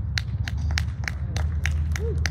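A regular series of short, sharp taps or clicks, about three a second, over a steady low hum.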